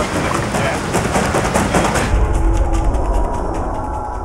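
Water splashing and churning around a large jaú catfish as it is dragged out of fast river water onto rocks. About halfway through, the bright splashing drops away, leaving a deep low rumble with a few held musical tones.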